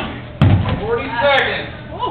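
A thrown dodgeball hits with one loud thud about half a second in, with indistinct voices around it.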